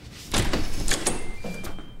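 Apartment front door with a digital door lock being unlatched and pushed open: a clatter and clicks of the handle and latch, then a few short electronic beeps stepping up in pitch from the lock.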